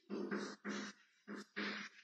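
Chalk scratching on a blackboard as a word is written: four short scratchy strokes, the last two quicker and closer together near the end.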